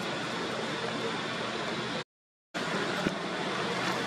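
Steady outdoor background noise, an even hiss-like wash with no clear single source, that cuts out completely for about half a second a little after two seconds in, with a light click shortly after it returns.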